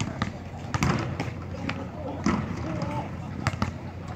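Basketballs bouncing on a hard court: a string of irregularly spaced thuds as players dribble.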